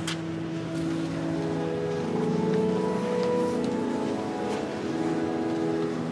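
Pipe organ playing slow, sustained chords that shift every second or two, as an introduction before the chant begins. A short click at the very start.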